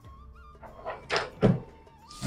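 A PVC wall-panel sample being handled on a display board: a brief plastic rattle about a second in, then a short thunk, over faint background music.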